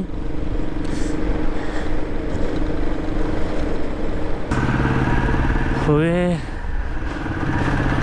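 Motorcycle engine running at road speed, with a steady hum over heavy low rumble. About halfway through the sound changes abruptly to a lower, steadier engine note, and a short voice is heard about six seconds in.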